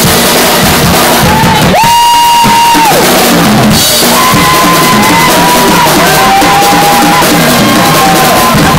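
Live rock band playing loud, with the drum kit prominent and long held high notes over it. About two seconds in, the drums and low end drop out for roughly a second under one sustained note, then the band comes back in.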